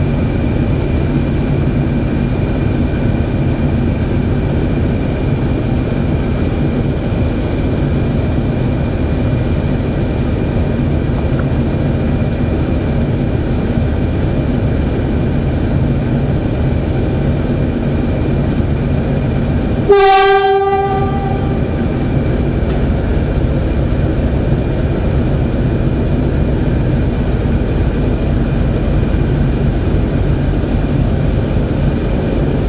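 CP class 1400 diesel locomotive's English Electric engine running steadily, with one loud horn blast of about a second two-thirds of the way through, in a stone-lined tunnel.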